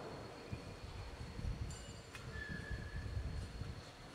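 Faint, uneven low rumbling of church room noise, with a single sharp click about two seconds in.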